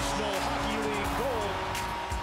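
Background music with an excited broadcast commentator's voice over it, calling a hockey goal.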